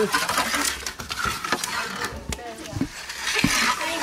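Calamari rings sizzling in hot oil in a steel frying pan inside a wood-fired oven, with sharp pops and crackles through the hiss.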